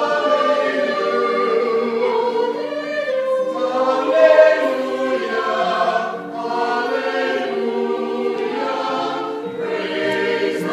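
Mixed church choir singing in harmony, holding long chords that move from one to the next.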